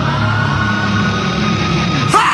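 Music: sustained low notes held under a high tone that glides slowly upward, a quiet passage of a rock track.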